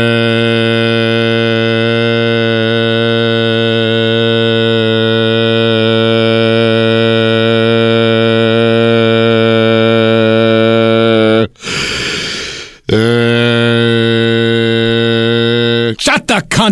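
A man's voice holding one long, steady, low note for about eleven seconds, drawing out the word he has just begun. He gasps loudly for breath, then takes up the same note again for about three more seconds.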